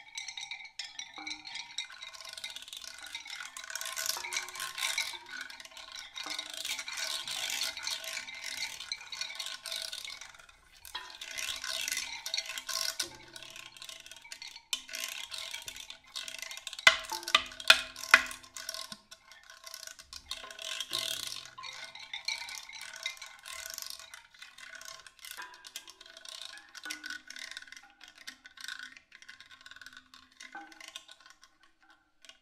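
Live experimental percussion music: dense rattling and shaking textures over a few held pitched tones, with a cluster of sharp, loud clicks about halfway through.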